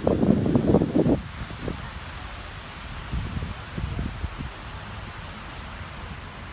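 Wind buffeting the phone's microphone in gusts, strongest in the first second and again more weakly a few seconds later, over a steady outdoor hiss.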